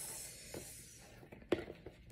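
Cardboard wig box being handled: a soft rubbing hiss that fades out over about a second, then a few light taps, the sharpest about one and a half seconds in.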